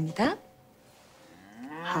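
A woman's voice: a brief rising vocal sound, then about a second of near quiet, then a long, drawn-out, wavering laugh that swells in near the end.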